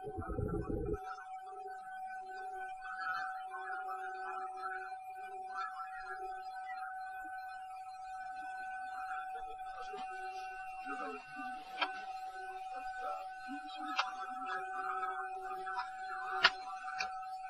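Cockpit voice recorder audio from a DC-9 cockpit during taxi: a steady electrical tone over muffled cockpit background noise. A low thump lasts about a second at the start, a hiss comes in about two-thirds of the way through, and there are two sharp clicks near the end.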